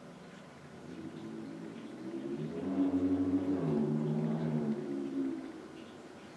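A woman humming a short tune, a few held notes that step in pitch, swelling in the middle and fading out near the end.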